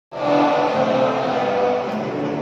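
A large group of people singing together with long held notes, led by a conductor.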